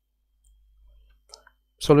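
A faint single click just past a second in, amid near silence; a man's voice starts speaking near the end.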